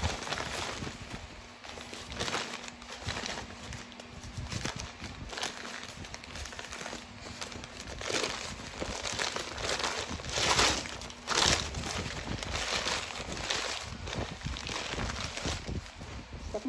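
Crumpled packing paper crinkling and rustling as it is pulled open by hand to unwrap a piece of china, with a few louder crackles in the second half.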